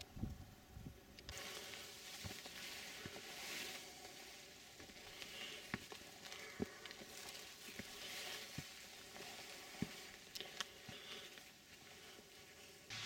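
Faint rustling of bracken fronds brushing past as someone walks through them, beginning about a second in, with scattered soft footsteps and ticks.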